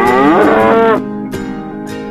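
Acoustic guitar music, with a single loud drawn-out call laid over it in the first second, rising in pitch, holding, then breaking off.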